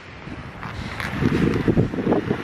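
Wind buffeting the microphone in a low rumble that gets much stronger in the second half, over footsteps on glazed ice.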